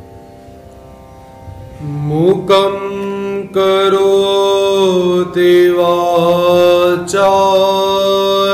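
Soft sustained musical tones, then about two seconds in a man's voice slides up and begins chanting a devotional invocation in long held notes, with short breaks between phrases.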